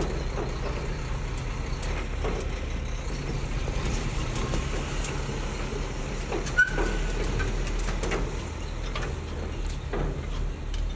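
Semi tractor-trailer's diesel engine running with a steady low rumble as the rig manoeuvres slowly through a turn. A brief high squeal from the rig comes about six and a half seconds in.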